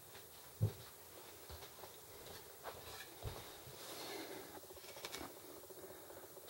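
Faint handling noises as a rifle is picked up and brought into view: light rustling with a soft knock under a second in, another about three seconds in, and a few small clicks near the end.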